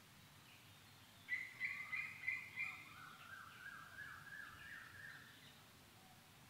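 A bird singing: a quick run of about five notes starting about a second in, then a softer, slightly lower series of repeated notes that rises a little in pitch and stops shortly before the end, over faint steady background noise.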